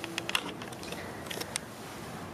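Handling noise from a handheld phone being moved: a scatter of small clicks and rustles over the first second and a half.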